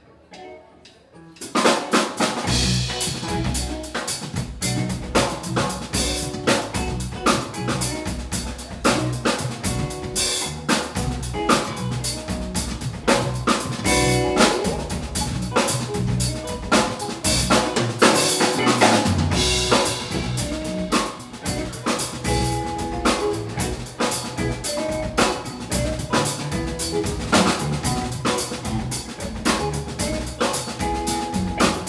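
Live jam band of banjo, electric guitar, bass guitar and drum kit. A few quiet plucked notes open it, then about a second and a half in the whole band comes in loud, with the drum kit driving a steady groove under banjo and guitar lines.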